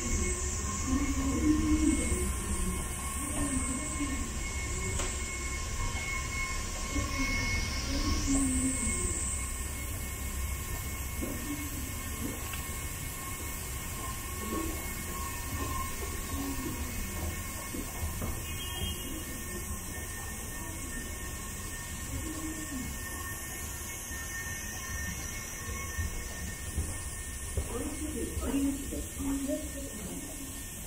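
Escalator running: a steady low mechanical hum with faint steady whine tones, heard while riding the steps up.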